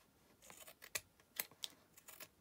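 Small scissors snipping through paper layered on card, trimming the overhanging designer paper flush with the card's edge: several short, sharp snips, the loudest about two-thirds of the way through.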